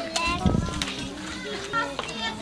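Several children's voices chattering and calling out over one another, no clear words.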